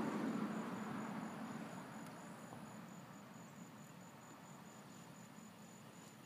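A cricket chirping in a steady, high-pitched pulse of about four chirps a second. A soft rushing noise is loudest at the start and fades away over the first three seconds.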